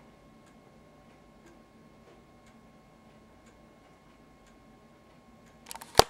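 Faint ticking of a wall clock, about two ticks a second alternating strong and weak, over quiet room tone with a faint steady hum. Near the end a quick run of clicks and one sharp knock.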